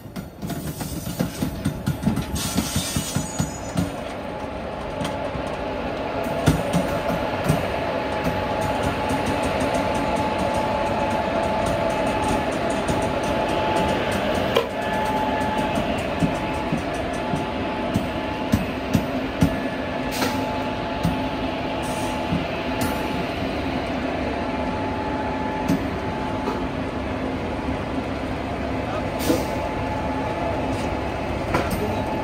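WCAM-3 electric locomotive moving slowly at close range, with a steady hum and whine and sharp wheel clacks over rail joints and points, the clacks thickest in the first few seconds.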